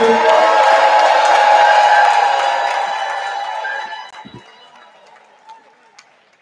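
Audience cheering and shouting, many voices at once, dying away about four seconds in.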